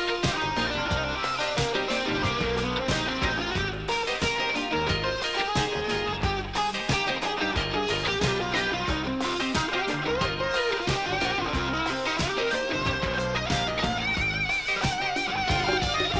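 Live rock band playing an instrumental passage: electric guitar prominent over a steady beat on drums, at an even, full level throughout.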